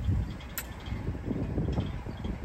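Low rumbling wind and outdoor noise coming through open car windows and buffeting the microphone, with a brief click about half a second in.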